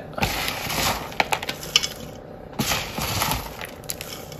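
Chunky orchid bark potting mix being pushed and packed by hand into a terra cotta pot, the chips clicking and rattling against each other and the clay in a run of short rustles and ticks, with a denser rustle a little past halfway.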